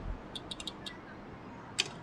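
A few faint ticks of the folding bike's frame being handled, then one sharp click near the end as the rear suspension block, which doubles as a latch, clicks into place.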